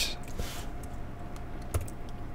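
A few faint computer keyboard keystrokes over a low steady background hum, one clearer click near the end.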